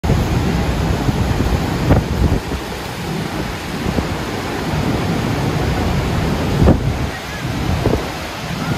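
Steady roar of the American Falls crashing onto the rocks and the churning river below, heard from the water, with wind buffeting the microphone in gusts about two seconds in and again near seven seconds.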